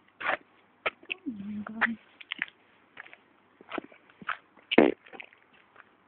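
A dog moving about on pavement on a leash, with scattered short scuffs and clicks. Just over a second in comes a brief low drawn-out sound, and near the end a louder knock.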